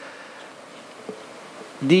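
Quiet room tone of a hall with a faint high hum, then a man's voice starting just before the end.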